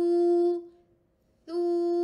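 A voice drawing out the recited syllable 'thu' twice at a steady, held pitch, once ending about half a second in and again from about a second and a half. It is Quranic recitation drill on the Arabic letter tha (ث), voiced with the tongue put out between the teeth.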